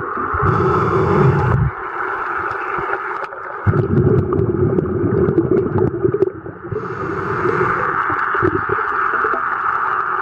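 Underwater sound picked up by a submerged camera: a muffled, shifting water rush with a low rumble that drops away for a second or two, broken by two brief hisses, one about half a second in and one about seven seconds in.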